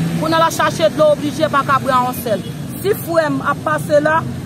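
A woman speaking without pause, over a steady low hum of street traffic.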